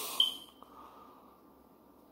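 A single short high-pitched beep about a fifth of a second in, after the tail of a man's murmured 'mm-hmm', followed by near-quiet room tone.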